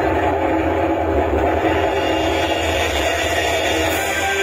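A loud, steady rumbling noise with a deep hum under it, played over the stage sound system as part of the mime's soundtrack in place of the music.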